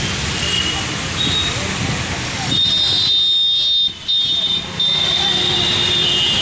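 Roadside street noise: passing traffic and a murmur of voices, with a high, steady tone coming in about halfway through and holding on.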